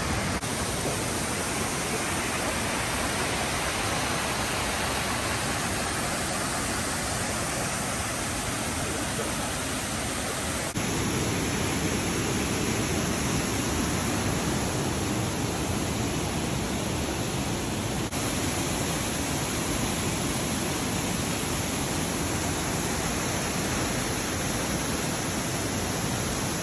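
A waterfall of the Kawazu Seven Falls rushing steadily over rock, a dense unbroken sound of falling water. The sound abruptly becomes fuller and slightly louder about ten seconds in, with another small shift near eighteen seconds.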